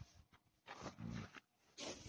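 Tibetan mastiff giving a short, low growl about a second in, between breathy huffs.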